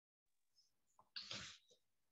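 A single short, breathy burst of noise from a person close to a microphone, about a second in, heard over a video-call audio feed after dead silence.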